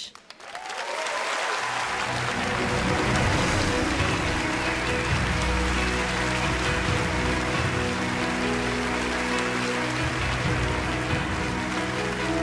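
Audience applause rising over the first second or two and then holding steady, with music playing underneath.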